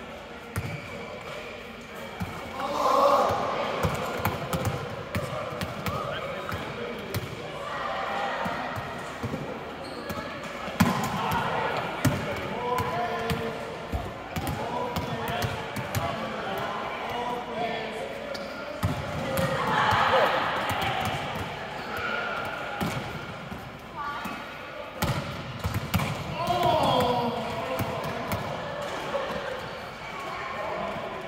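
Volleyballs being struck with hands in passes and sets and bouncing on a hard sports-hall floor: many irregular, overlapping thuds and slaps throughout, with players' voices between them.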